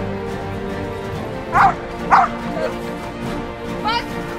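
A Belgian Malinois barking at the protection helper: two loud barks about half a second apart, then a shorter one near the end, over background music.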